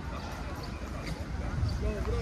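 Footsteps of a person walking on a paved path, heard as repeated low thumps over a steady low rumble, with people's voices talking some way off.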